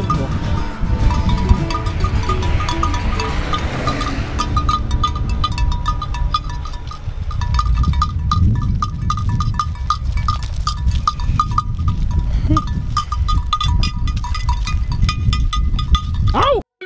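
Sheep bleating over background music, with wind rumbling on the microphone.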